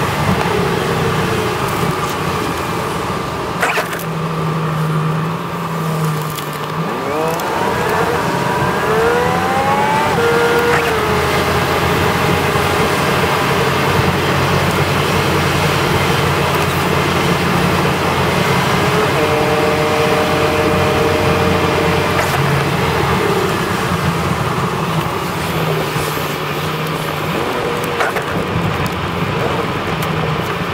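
Car engine and tyre noise heard from inside the cabin while driving on a wet, slushy road. The engine note rises as the car accelerates about seven seconds in, then settles into a steady cruise.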